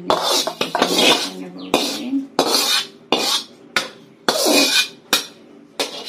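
Metal spoon scraping and knocking against a metal plate and an aluminium pot, about ten sharp, ringing strokes at an irregular pace, as food is scraped off the plate into the pot.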